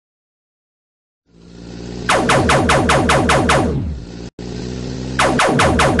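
Robot transformation sound effect: a low electronic hum swells up, then a rapid run of about eight mechanical pulses, each falling in pitch, about two seconds in. The same run repeats about five seconds in.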